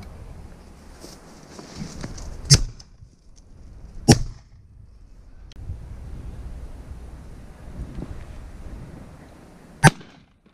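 Three shotgun shots: two about a second and a half apart a few seconds in, and a third near the end.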